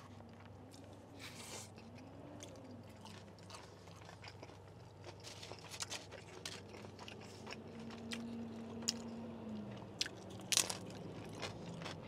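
A person chewing food close to the microphone, with soft wet chewing and scattered crisp crunches; a couple of louder crunches come near the end.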